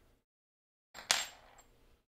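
A single sharp metallic clink, a small metal tool or part set down on a wooden desk, with a brief high ring after it.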